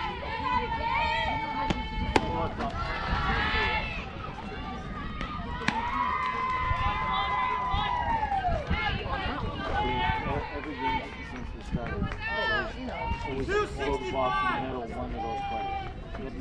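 Voices shouting and calling out across a softball field, several of them long, drawn-out calls, with two sharp knocks about two and six seconds in.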